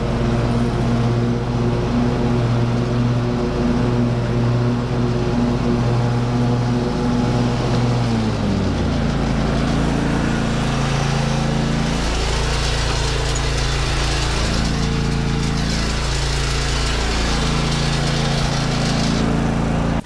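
Petrol lawn mower engine running steadily while mowing. Its note drops a little about eight seconds in, then dips and recovers a few times as it cuts into long, knee-high grass.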